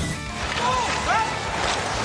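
A short music sting with a whoosh at the start as the countdown graphic comes up, then arena crowd noise and indistinct voices.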